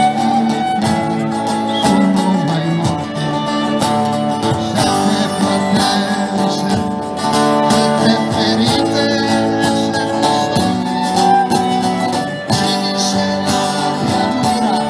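A live band playing an instrumental passage of a song on violin and guitar.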